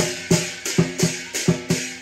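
Southern lion dance percussion: big drum, hand cymbals and gong played together in a steady beat, about two strong crashing strikes a second with lighter strokes between.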